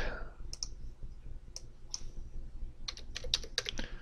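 A few separate clicks, then a quick run of computer keyboard keystrokes near the end as a number is typed into a field.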